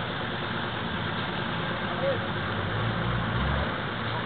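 A car engine running under a steady noisy background, its low rumble swelling briefly about three seconds in.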